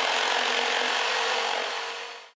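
Sound effect of wood being cut, a steady unbroken noise that fades out near the end.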